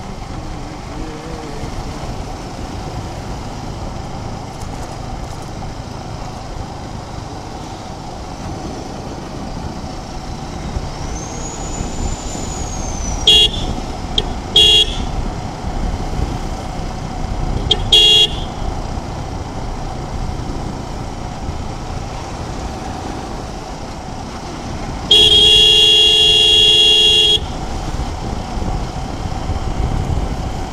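Riding noise from a Suzuki Gixxer 250's single-cylinder engine and the wind, running steadily. A horn sounds loud and close: two short honks a little before the middle, a third shortly after, and one long honk of about two seconds near the end.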